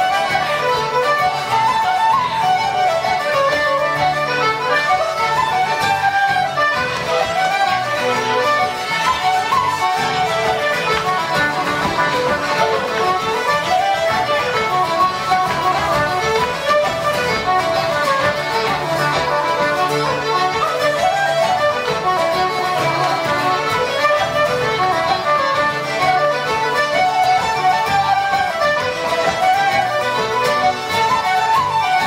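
A live Irish céilí band playing traditional dance music for set dancing: a quick, running melody line over steady guitar chords, at an even dance tempo.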